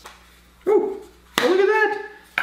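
A man's voice making two short vocal exclamations: a brief one with a falling pitch, then, after a sharp click, a longer one whose pitch rises and falls.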